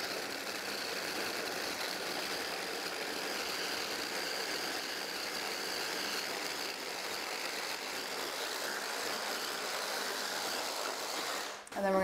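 Immersion blender's motor unit on a chopper-bowl attachment running steadily on turbo, whirring as it purees a thick, sticky date frosting. It cuts off just before the end.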